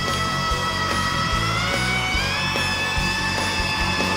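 Male rock singer holding one long, very high wailed note that steps up in pitch twice, over a heavy metal band with distorted electric guitar and a steady drum beat.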